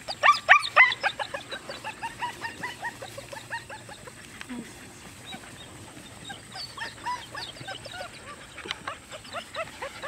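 German Shepherd puppies yipping and squealing in a rapid string of short, high calls, several at once. The calls are loudest in the first second, then continue more softly with a few louder ones near the end.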